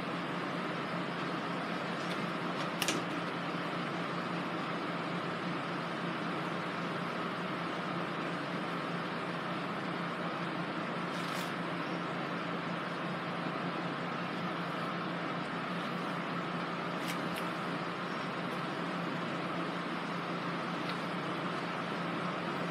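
A steady background hum and hiss, like a fan or air conditioner running in the room, with a few faint clicks.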